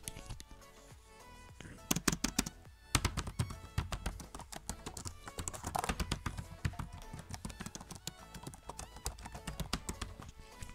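Typing on the keyboard of a Lenovo IdeaPad S145 laptop to show how its keys sound: a quick, uneven run of plastic key clicks that starts about two seconds in and keeps going.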